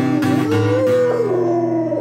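A pit bull howls along to a strummed acoustic guitar: one long howl that rises, holds, then slides down in pitch.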